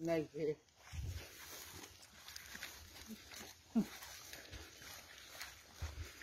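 Faint footsteps through grass and undergrowth, with a few soft low thumps. A short voice sounds right at the start, and a brief falling call comes near the middle.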